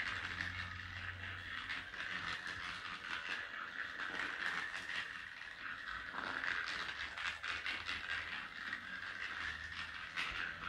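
Battery-powered rolling ball toy with a toy bunny inside, its small gear motor whirring and clicking steadily as the ball moves across a hardwood floor.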